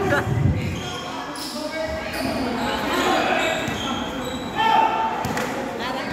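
Basketball bouncing on a court during a game, with shouts and chatter from players and onlookers echoing in a large hall; one louder held shout comes about two-thirds of the way through.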